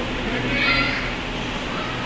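A short high-pitched call about half a second in, lasting under half a second, over a steady low hum.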